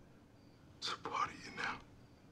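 A brief whispered phrase, about a second long, beginning with a hiss, over quiet room noise.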